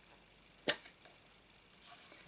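A sharp plastic click as an ink pad's case is snapped open, with a softer click just after; otherwise quiet.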